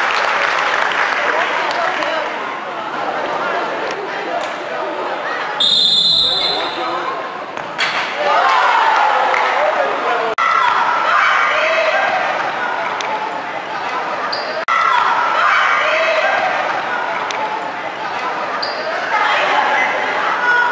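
Players' voices shouting and calling across a large, echoing sports hall during a futsal game, with the ball thudding on the floor. About six seconds in, a referee's whistle blows one long blast of about two seconds.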